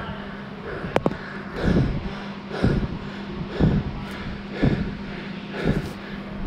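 A man breathing hard from exertion in a gym, with short forceful breaths about once a second. There is a sharp knock about a second in.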